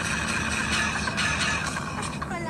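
Steady engine and road rumble heard from inside a bus's passenger cabin.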